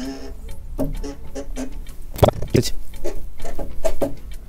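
Rothenberger hand pressure test pump being worked stroke by stroke, giving short pitched squeaks and two sharp clicks a little after two seconds in, as it pressurises a radiator union connection for a leak test.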